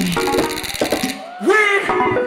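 Live hip-hop performance over a PA: a loud backing beat with a rapid high ticking pattern, whose top end drops away a little past a second in, then a rapped vocal line comes in over the beat.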